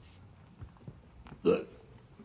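One short, sharp vocal sound from a person, like a hiccup, about one and a half seconds in, over otherwise quiet room sound.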